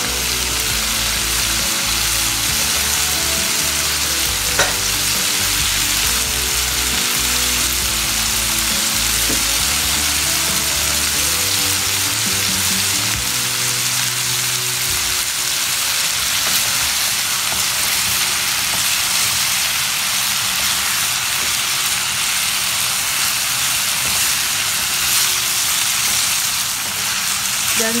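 Chicken and vegetables sizzling steadily in a nonstick frying pan while a wooden spatula stirs them. There is a low rumble for about the first fifteen seconds.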